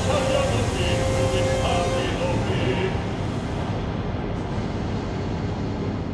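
Contemporary opera music: a voice sings held notes over a dense, low orchestral sound for the first few seconds, which then turns into a steady, thick drone with no clear melody.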